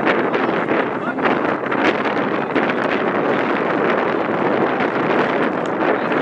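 Steady wind rushing over the microphone outdoors, a continuous noise with a rustling flicker.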